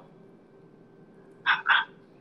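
A dog barking twice in quick succession about one and a half seconds in, after a quiet pause.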